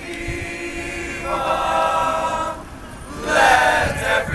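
All-male a cappella group singing in harmony, holding a long sustained chord, then coming in louder about three seconds in.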